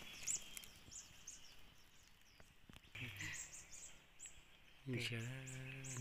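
Wild birds calling in the background: short, high, downward-sliding chirps, repeated every half second or so, with a few faint clicks among them.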